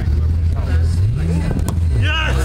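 Steady low rumble under faint voices, with one sharp knock near the end from a football being kicked on artificial turf.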